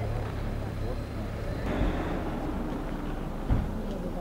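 Indistinct talk of a group of people outdoors over a steady low rumble, with two short dull knocks, one about two seconds in and one near the end.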